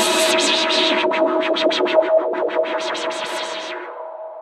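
Electronic techno track with distorted synthesizer layers over a steady held tone. From about a second in, the sound is chopped into a rapid stutter of about seven pulses a second. Near the end it fades and loses its high end.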